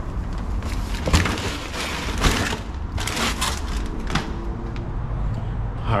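Groceries and a cardboard produce box being handled and set down at a doorstep: several short rustling, scuffing bursts over a steady low rumble.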